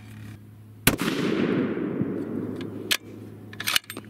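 A single shot from a custom 7mm PRC bolt-action rifle with a muzzle brake, firing a Berger 195-grain bullet over a hot 65-grain charge of H1000. It goes off with a sharp crack about a second in, followed by a long echo that fades over about two seconds. A few metallic clicks come near the end as the bolt is worked, with the heavy bolt lift typical of a high-pressure load.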